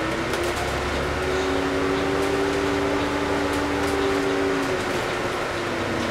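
Volvo Olympian double-decker bus running under way, heard from inside: a low rumble with a steady whine that climbs slowly in pitch as the bus pulls, then drops away about five seconds in.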